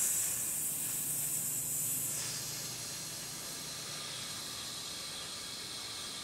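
A long, steady hiss of a person's breath: a slow, drawn-out exhale. It is sharpest for the first two seconds, then continues softer and even.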